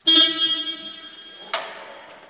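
Electric horn of a Jungheinrich EKS 110 order picker sounding one steady beep of about a second and a half that cuts off suddenly, followed at once by a short knock.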